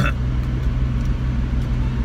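Steady low drone of a Volvo 240 wagon's engine and exhaust heard inside the cabin while driving; the car has an exhaust leak awaiting repair.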